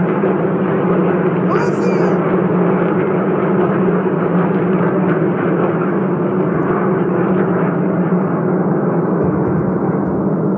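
Soundtrack of phone footage of Iron Dome interceptions in the night sky: a loud, steady rumbling din with no distinct blasts, heard through a webinar's screen-shared audio.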